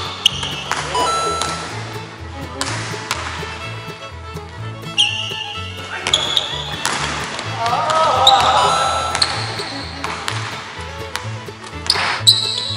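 Background music with a steady beat over a basketball being dribbled on a hardwood gym floor. Several short high-pitched tones come through, and a brief voice is heard about eight seconds in.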